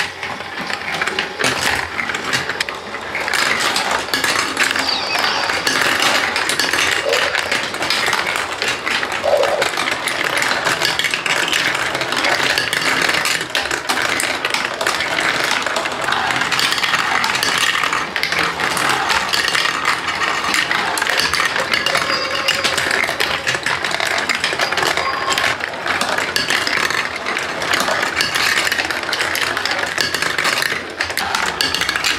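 Many plastic marbles rolling and clattering through a VTech Marble Rush plastic marble run: a dense, unbroken stream of small clicks and rattles.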